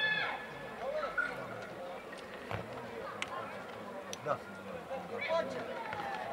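People shouting around an outdoor football pitch: a high, arching shout at the start, then faint scattered calls and chatter with a few sharp knocks in the middle, and more shouting near the end.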